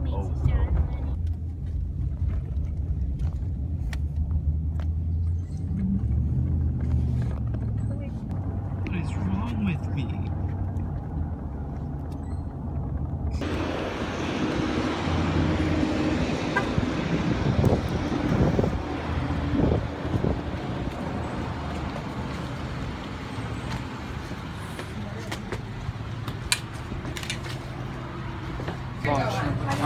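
Steady low engine and road rumble heard inside a moving car's cabin. About halfway through it cuts abruptly to open-air street noise, a broad hiss with scattered knocks, as people walk across a parking lot.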